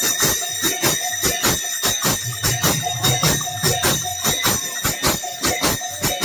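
Small brass hand cymbals of a kirtan group struck together in a fast, even rhythm, about four to five clashes a second, their ringing held between strokes. No one sings.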